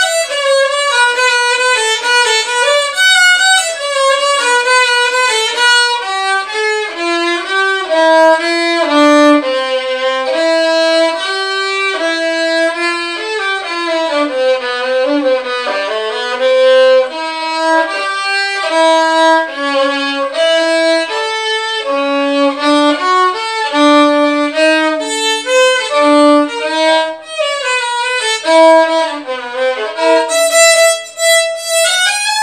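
A violin playing a melody in held bowed notes, with a sliding dip in pitch about halfway through.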